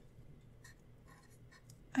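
Faint sound of a Zebra Mildliner highlighter's felt tip moving on paper as numbers are handwritten, in short separate strokes.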